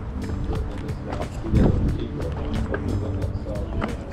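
Background music with a steady beat, with one louder low thump about a second and a half in.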